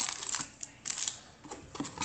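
Wrapped trading-card packs crinkling and the cardboard hobby box rustling as hands pull packs out of it: a few short crinkles with quiet gaps between.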